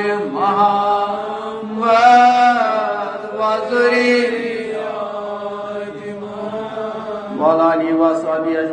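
A man's voice chanting Islamic salawat, blessings on the Prophet Muhammad, in long drawn-out melodic phrases.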